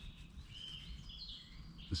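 Faint songbird song: a few thin, wavering whistled phrases over low outdoor background noise.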